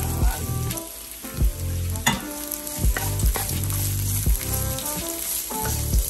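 Sliced red onion and ginger sizzling in hot oil in a nonstick pan while a wooden spatula stirs them, knocking against the pan several times.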